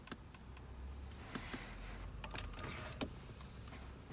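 The BMW 730d's integrated telephone keypad extending from its slot in the centre console, with a faint small-motor whir and a few light clicks.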